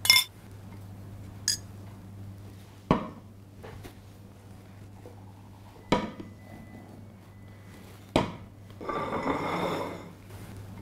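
Bowls and plates being set down on a wooden countertop: about six sharp clinks and knocks a second or two apart, the first with a brief ring, then a plate scraping across the counter near the end. A low steady hum runs underneath.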